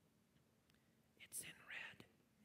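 Near silence, then a faint, brief whispered voice from about a second and a quarter in, in the pause after a question is put to the room.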